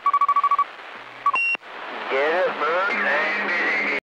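CB radio traffic: a quick string of about eight short high beeps, then a single beep that jumps up in pitch, followed by a voice coming over the radio.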